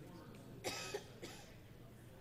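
A person coughing twice: a sharp cough about two-thirds of a second in and a shorter one about half a second later.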